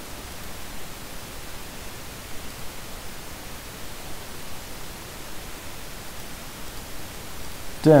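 Steady hiss of a voice-over recording's background noise, with no other sound in it; a man's voice begins right at the end.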